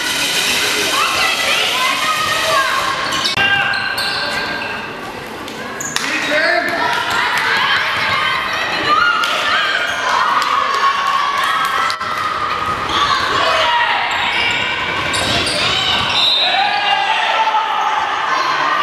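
Indoor handball being played in a sports hall: a ball bouncing on the court floor among voices calling out, echoing in the hall.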